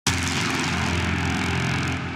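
A BMW inline-six car engine running at steady revs.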